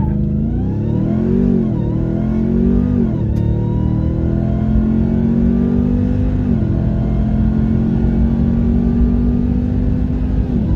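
2021 Ram TRX's supercharged 6.2-litre V8 at full throttle, accelerating hard from a standstill, heard from inside the cab. The engine note climbs through the gears, falling at upshifts about three seconds in and again near seven seconds.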